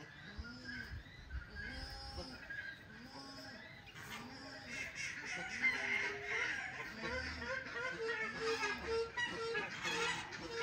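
Farm waterfowl honking: a short, arched call repeated about once a second, with other bird calls mixed in.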